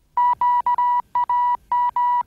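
A string of electronic beeps at one steady pitch, short and long ones in an uneven, Morse-code-like rhythm.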